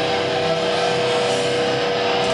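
Thrash metal band playing live, with distorted electric guitars holding one sustained, ringing note between riffs.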